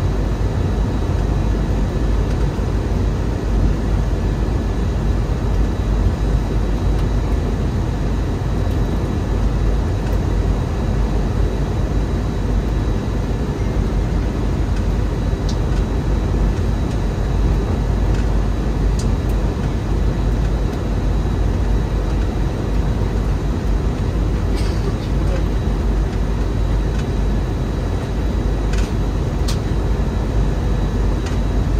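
Steady in-cabin noise of an Airbus A321 in descent, heard from a window seat over the wing: engines and airflow running as a loud, even rumble with a faint steady whine. A few small clicks in the second half.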